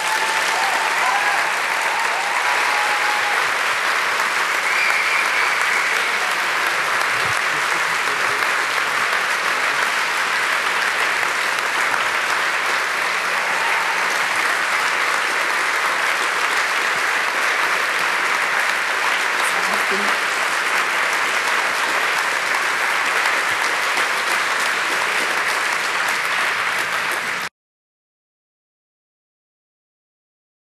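Audience applauding, steady and sustained, then cut off abruptly near the end.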